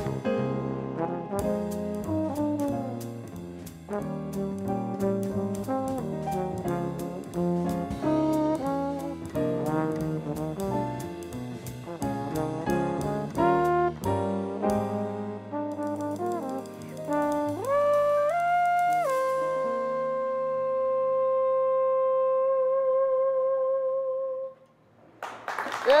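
Jazz quartet of trombone, piano, upright bass and drums playing a busy passage with cymbals, closing on a long high trombone note that ends with vibrato as the tune finishes. Applause and cheering break out just before the end.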